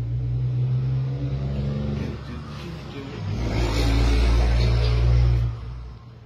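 A large truck driving past, its engine a deep, steady drone that swells to its loudest in the second half and then drops away quickly near the end.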